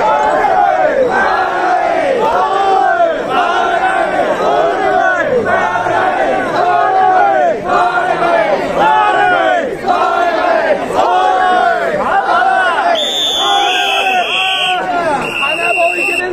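A large group of mikoshi bearers shouting a rhythmic carrying chant in unison, a call more than once a second, steady throughout. Near the end, two short high steady tones sound over the chant.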